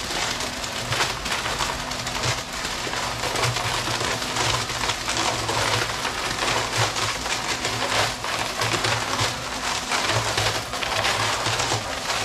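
Portable electric concrete mixer running, wet concrete churning in its turning drum with a steady gritty hiss over a low motor hum.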